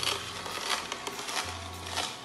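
Cold-press juicer crushing celery: a low motor hum that comes and goes under a rough, crackling grinding noise.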